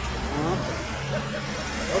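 Road traffic: a motor vehicle's engine running steadily, with faint voices in the background.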